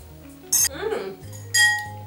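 A metal teaspoon clinking against a glass jar, twice: a short clink about half a second in and a louder one that rings briefly near the end.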